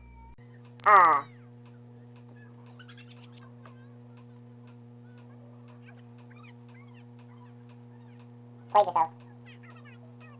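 Two short, loud high-pitched cries over a steady low electrical-sounding hum: one about a second in, falling in pitch, and a quick double cry near the end.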